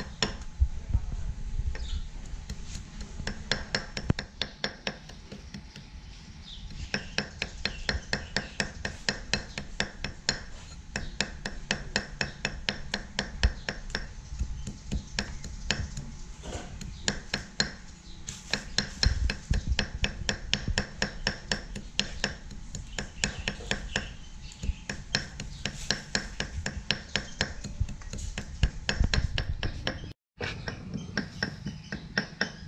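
Cleaver rapidly chopping on a thick round wooden chopping block, a steady run of quick knocks of blade on wood that eases briefly about five seconds in.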